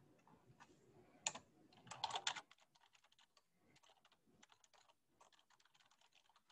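Typing on a computer keyboard, entering a line of text. A few louder keystrokes come about one to two seconds in, then a run of quick, faint key taps.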